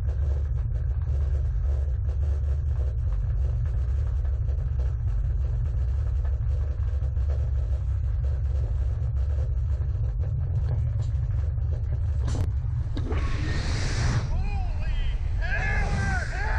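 Wind buffeting the microphone of a camera on a Slingshot reverse-bungee ride capsule in flight, a steady deep rumble. About twelve seconds in comes a sharp click, then a loud rush and the riders yelling and whooping.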